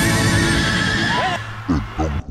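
A horse whinny sound effect over the last of the band's music. It is a high, wavering call that holds for over a second and then drops away in pitch. A voice begins near the end.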